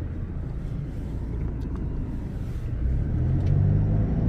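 Car engine and tyre rumble heard from inside the cabin while driving slowly over block paving; the engine hum grows louder in the last second or so.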